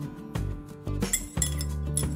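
A metal spoon clinking against a small glass bowl while scooping diced carrot out, over background music.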